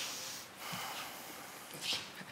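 Soft whispering and breaths, a few short hushed sounds with no clear words.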